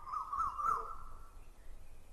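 A bird calling, a high wavering warble through the first second or so, over faint background noise.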